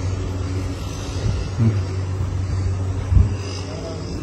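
A steady low mechanical hum, like a nearby engine or motor running, with a short dull thump about three seconds in.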